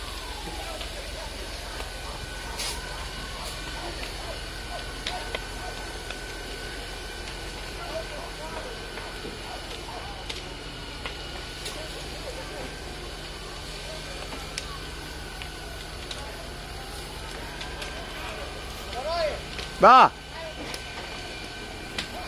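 A burning house roof crackling with scattered sharp pops, over a steady low hum of a fire engine running. About two seconds before the end a man shouts once, loudly ("Bah!").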